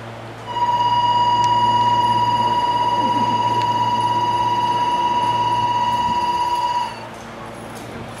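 Station platform departure bell sounding: a steady, loud electronic ring at one high pitch that starts about half a second in and cuts off suddenly about six seconds later, signalling that the train's doors are about to close. A low steady hum runs underneath.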